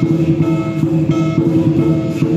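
Lion dance percussion playing: a big drum struck in a steady beat about three times a second, with cymbals and gong ringing over it.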